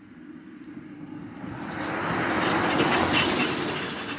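A passenger minibus driving along the road, growing steadily louder as it comes near and loudest about three seconds in.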